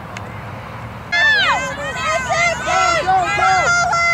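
Spectators yelling and cheering in high-pitched voices, starting suddenly about a second in over background crowd chatter.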